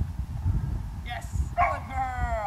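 A Dutch shepherd gives a short yip and then a long high whine, starting about a second and a half in and falling steadily in pitch. Under it runs a low rumble of wind on the microphone.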